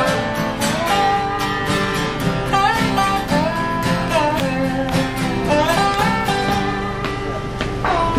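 Acoustic band playing unplugged without microphones: acoustic guitars strummed in a steady rhythm with a melody line over them.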